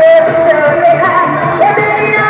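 A woman sings a pop song into a handheld microphone over a loud backing track played through a PA system. She holds one long note, then steps up in pitch about one and a half seconds in.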